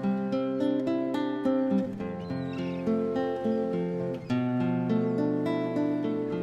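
Solo classical guitar playing a passacaglia: a steady run of plucked notes ringing over low held bass notes.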